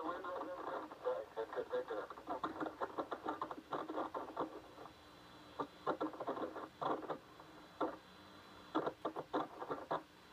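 Apollo 11 astronauts' voices over the narrow, tinny air-to-ground radio link, in short phrases with pauses. A faint steady high tone runs underneath.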